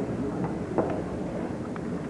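Low auditorium room noise between announcement and song, with one short knock about a second in and a few faint ticks, such as instruments or a microphone being handled.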